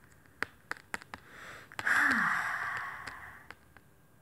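A few light clicks of tarot cards being handled, then, about two seconds in, a woman's long breathy sigh with a short falling voiced sound at its start.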